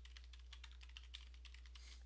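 Faint typing on a computer keyboard: a quick, uneven run of key clicks as a password is entered.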